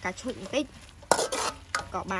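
A metal spoon scraping and clicking against a metal wok as sliced beef is stir-fried in sizzling juices, with a loud scrape about a second in.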